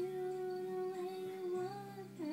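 A girl's voice humming one long held note over a karaoke backing track, its pitch dipping slightly near the end.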